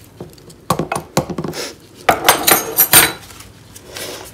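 Metal measuring spoons clinking and scraping against a plastic measuring jug and each other. There are a few sharp taps about a second in, then a louder run of clinks and scrapes from about two to three seconds in.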